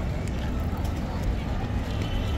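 Open-air outdoor ambience: a steady low rumble with faint voices of people nearby.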